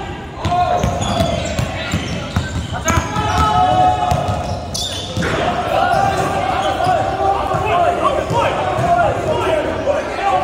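Basketball bouncing on a hardwood gym floor amid players' voices and shouts, echoing in a large gymnasium.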